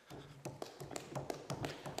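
A string of light taps and knocks, several within two seconds, over a faint low murmur, as papers and objects are handled at a wooden desk.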